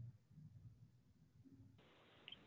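Near silence on a video-call line: faint low room noise, with a faint hiss that comes in near the end.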